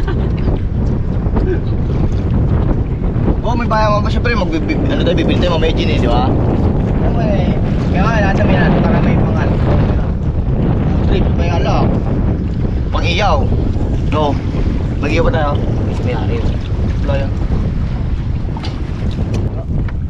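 Wind buffeting the microphone over a steady low rush of open water around a small boat, with men's voices calling out briefly now and then.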